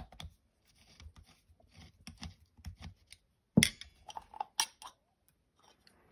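Screwdriver backing out the small screws of a carburetor float bowl: a run of light metallic clicks and scrapes, then a sharper click about three and a half seconds in and a few more clicks as the bowl comes free and is handled.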